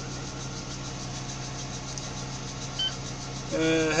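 Tadano crane's engine idling steadily, heard from inside the cab, with one short high-pitched electronic beep from the control panel about three seconds in.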